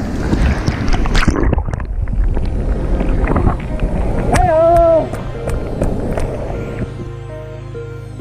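Fast river water rushing and splashing close to the microphone, with scattered sharp splashes and clicks and a short held vocal call about four and a half seconds in. Soft ambient background music comes in near the end.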